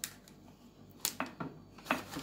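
Silicone spatula spreading thick chocolate fudge in a paper-lined glass dish: a few short scrapes and clicks against the dish, starting about a second in.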